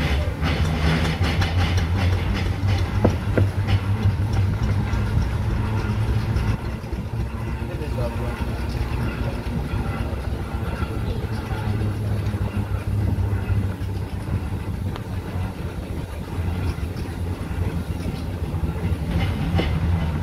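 Foden steam wagon running slowly on the road, a steady low mechanical rumble with a quick regular engine beat, heard from onboard behind the cab.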